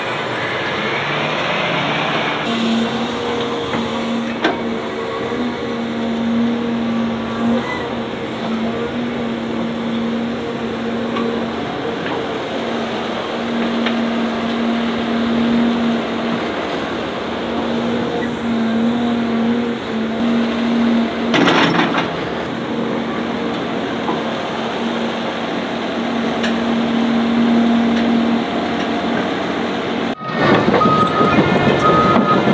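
Heavy diesel earthmoving machinery running steadily: a Cat articulated dump truck and a Cat hydraulic excavator working as dirt is loaded. A brief clatter comes a little over twenty seconds in.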